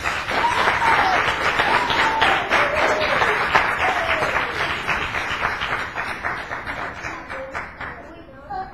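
Audience applauding with a few voices calling out over it, loud at first and dying away near the end.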